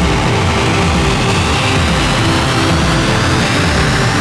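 Techno dance music with a driving, bass-heavy beat and a rising synth sweep building up over it.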